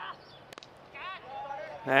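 Cricket bat striking the ball: a single sharp crack about half a second in.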